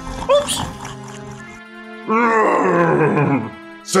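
Radio-drama audio over background music: a brief cry just after the start, then about two seconds in a long, falling growling groan from a voice playing the dragon as it wakes.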